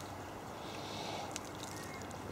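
Faint water moving around a small model sailboat as it is pushed over in a paddling pool, heard under a quiet steady hiss, with a couple of soft clicks near the end.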